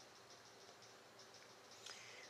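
Near silence: faint room tone and hiss, with one faint tick shortly before the end.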